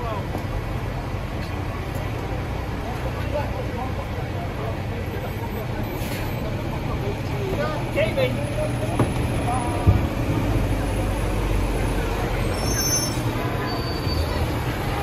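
Street noise dominated by a large vehicle's engine idling with a steady low rumble that grows stronger about ten seconds in, with scattered voices and a single sharp knock.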